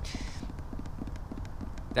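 A pause in speech filled by faint outdoor background: a steady low rumble with scattered faint clicks.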